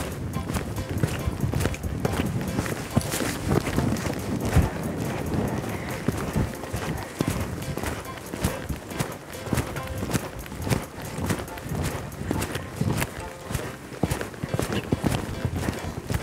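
Pony cantering on a sand arena surface: a quick, continuous run of muffled hoofbeats, with background music.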